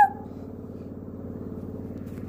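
Domestic cat purring right against the microphone: a steady, low, rapidly pulsing rumble that grows gradually louder.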